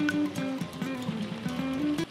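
Background guitar music: a picked melody of short held notes, which cuts off abruptly at the end.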